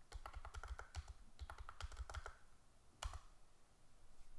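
Faint typing on a computer keyboard: two quick runs of keystrokes, then a single firmer keystroke about three seconds in.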